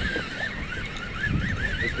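High squeal from a line-counter trolling reel cranked fast, rising and falling in pitch about four times a second in time with the handle turns, over a low wind rumble.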